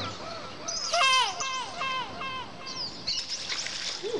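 A bird calling: a quick run of about six falling notes starting about a second in, the first the loudest, followed by fainter high chirps near the end.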